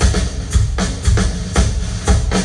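Live rock band playing loud through the PA, led by a steady drum beat of about two strikes a second, heard from the audience in a large hall.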